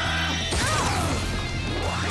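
Sword-slash and impact sound effects over a dramatic action music score, with a hard hit about half a second in.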